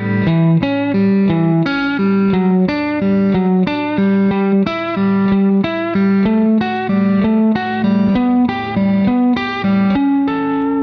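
Telecaster electric guitar playing a country double-stop sequence as triplets, pulling off to the open third string: a quick, even run of plucked notes moving through the shapes.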